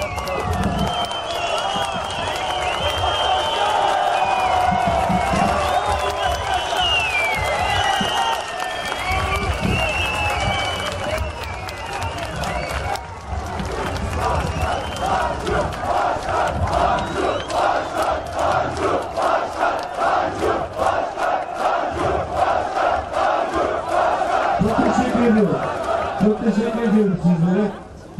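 A protest crowd shouting and cheering, many voices at once. From about halfway the crowd settles into chanting together in a steady rhythm of about two beats a second.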